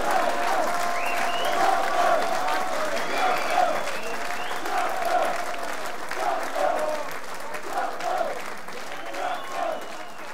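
Concert audience applauding, with voices calling out over the clapping; the sound gradually fades out.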